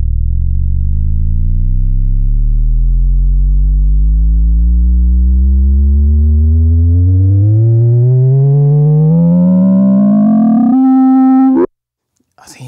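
Korg Monologue analogue monosynth at full filter resonance: a single low, resonant tone swept slowly and steadily upward for about eleven seconds as a knob is turned. Near the end it jumps to a steady, brighter, buzzier note and then cuts off suddenly.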